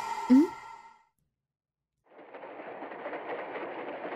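A brief voiced 'mm-hmm' at the start, then a second of silence. About two seconds in, the steady rattling rumble of a train running starts and continues.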